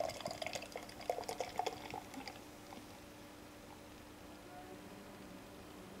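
Beer poured from a can into a tilted glass: splashing most in the first two seconds, then quieter as the glass fills.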